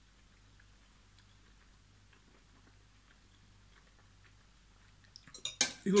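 Near silence for most of it: faint chewing of a mouthful over a low steady hum. About five seconds in comes a short run of sharp clicks from the fork and knife on the plastic meal tray, just before a man starts speaking.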